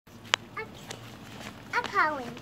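A single sharp click about a third of a second in, the loudest sound, then a young child's high voice near the end, sliding down in pitch.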